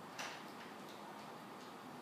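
Quiet room tone: a steady faint hiss with a few faint ticks, the clearest about a quarter of a second in.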